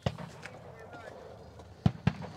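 Handling of an AKM fitted with a red-dot sight: a sharp click at the start, then two loud knocks close together near the end, as a hand grips and taps the mounted sight and rifle.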